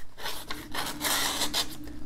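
Damasteel blade of a Brown Knives Exponent folding knife slicing through a sheet of printer paper, one cutting stroke lasting about a second and a half. The thin factory edge seems unstropped and feathers the paper a little as it cuts.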